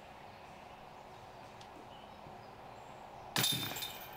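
Faint outdoor ambience, then about three seconds in a disc golf putt hits the metal chains of the basket: a sudden jangling clatter that rings and fades.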